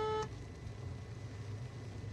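Quiet, steady low rumble of a car cabin. A flat, held high tone cuts off about a quarter second in.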